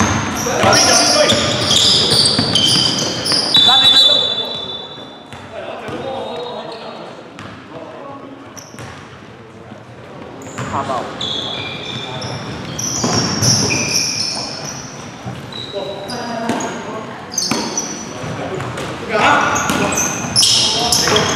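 Basketball game sounds in a large gym hall: a ball bouncing on the hardwood floor, short high squeaks of sneakers, and players' voices calling out.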